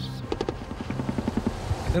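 Helicopter rotor beating in a rapid, even rhythm.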